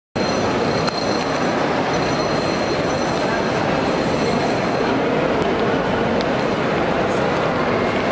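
Loud, steady din of a busy airport arrivals hall, with indistinct voices mixed in.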